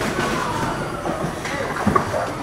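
Bowling ball rolling down a bowling lane, a steady low rumble, with a sharp knock near the end.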